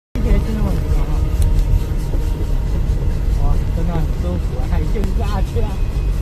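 Steady low rumble of a moving car heard from inside the cabin: engine and road noise, with people talking over it.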